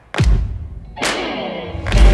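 Deep drum hits on a steady beat in the backing music, about one every 0.9 seconds, each a heavy thud with a falling boom.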